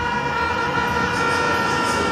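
Live band music through a large PA: a sustained keyboard chord held steady between vocal lines.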